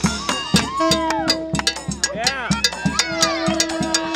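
Hand-held cowbell struck with a wooden stick in a steady beat, about four strokes a second and the loudest sound. It plays within an acoustic brass-and-reed street band, with a wind instrument holding a long note twice and voices of the crowd around it.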